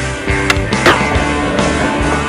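Skateboard sliding down a metal handrail, with a sharp clack about half a second in followed by a scraping grind, under a music soundtrack.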